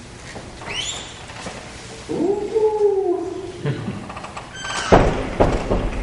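A drawn-out vocal sound that rises and falls, then a sharp thump about five seconds in, as the lecturer bends over the wooden lectern, with a few short squeaks around it.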